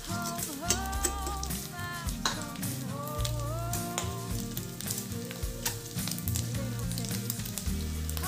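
Pork cubes sizzling as they brown in hot oil in a frying pan, with small crackles and the clicks of metal tongs turning the pieces. A song with singing plays over it.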